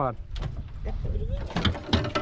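Knocks and rattles of gear against an aluminium boat, loudest near the end, over a low rumble of wind on the microphone, with a faint voice about a second in.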